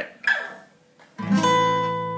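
Acoustic guitar: an A minor 9 chord in a barre shape at the 5th fret, strummed once about a second in and left to ring.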